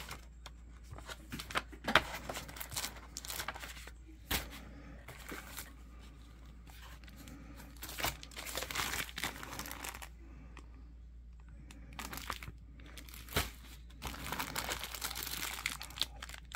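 Plastic packaging bags and paper pages being handled: irregular crinkling and rustling, with a few sharp knocks.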